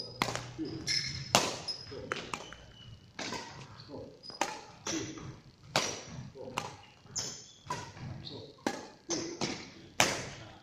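Badminton rackets hitting a shuttlecock back and forth in a quick rally: sharp hits about every second, echoing in a large hall, with short high squeaks of shoes on the court floor between them.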